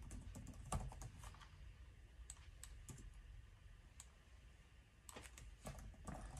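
Faint computer keyboard typing: scattered keystrokes, a flurry at the start and another near the end, with a few single taps in between.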